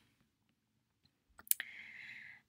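A faint pause broken about one and a half seconds in by a single sharp click, followed by a short, soft intake of breath.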